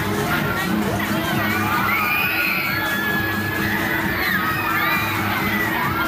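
Riders on a spinning fairground ride screaming, many overlapping shrieks rising and falling in pitch. Ride music with a steady low beat plays underneath.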